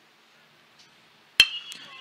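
Metal baseball bat striking the ball about a second and a half in: one sharp crack with a short ringing ping, a line drive ripped down the line.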